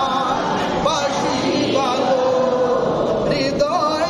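A man singing a devotional Islamic milad song, his voice held in long notes with wavering, ornamented turns in pitch.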